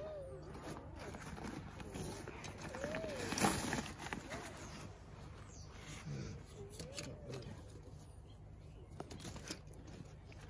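Synthetic fabric of a hunting pack rustling as its top compartment is opened, with a louder rustle about three and a half seconds in and a scatter of sharp clicks from its buckles and cord lock later on. A few short rising-and-falling whistled calls, from a bird, sound faintly in the background.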